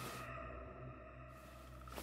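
Eerie horror-film drone of steady held tones, overlaid by swells of hissing noise: one fades just after the start and another rises in the second half.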